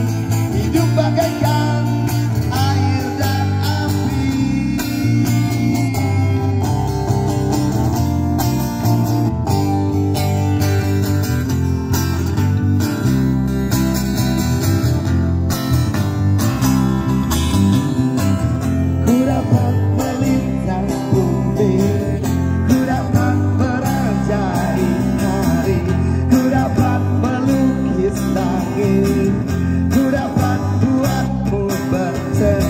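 Live band playing a pop song through a PA: a male singer sings into a handheld microphone over strummed acoustic guitar and electric guitar.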